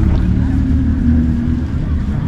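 Wind buffeting the microphone outdoors, a steady low rumble, with faint voices in the background.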